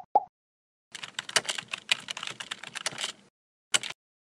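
Keyboard typing sound effect in an animated logo sting: two short tone blips, then a quick run of keystroke clicks for about two seconds, and one more sharp click near the end.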